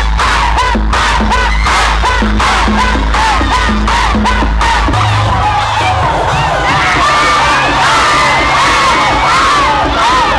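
A dense crowd of teenagers shouting and cheering together, many voices at once, over loud music with a deep bass beat.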